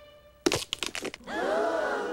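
A sudden cluster of sharp cracks and crunches about half a second in, a cartoon sound effect of something breaking. It is followed by a voice starting a long cry that rises and then falls in pitch.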